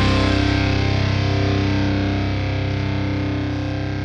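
The final held chord of a rock song on distorted electric guitar, ringing out and slowly fading. The bright top end drops away as it begins.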